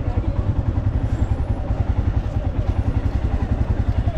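Motorcycle engine running at low speed while the bike rolls slowly, a rapid, even low beat.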